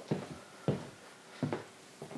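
Three short, faint clicks and knocks about two-thirds of a second apart, the middle one the loudest, from a CD player being worked to start playback.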